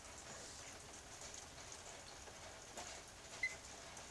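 Faint, steady background noise with no clear source, and one very short high-pitched blip about three and a half seconds in.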